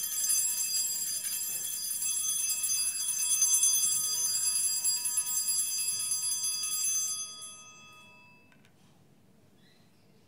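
Altar bells rung at the elevation of the consecrated host: a high ringing of many tones that goes on for about seven seconds, then dies away.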